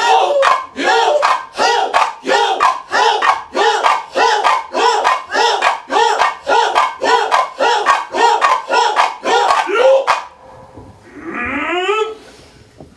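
Rhythmic shouted chanting by a man and a woman together: short cries that rise and fall in pitch, about two and a half a second, which stop about ten seconds in, followed near the end by a single long rising cry.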